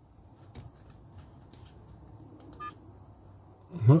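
Car dash cam DVR giving one short electronic beep about two-thirds of the way in as a button press switches the unit off, with a few faint button clicks before it.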